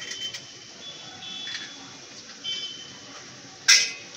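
Spatula stirring and scraping a carrot-and-prawn stir-fry in a metal pan, with several short high-pitched squeaks from metal scraping on metal. Near the end a single sharp clank, the loudest sound, as the spatula knocks against the pan.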